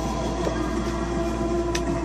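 Background music with sustained, steady notes, and two light clicks from handling a cardboard-and-paper 7-inch record package as the record is pulled out.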